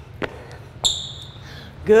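Hand-held dumbbells knocking as they are handled on a wooden floor: a faint knock, then a sharp metallic clink just under a second in, with a brief high ring that dies away.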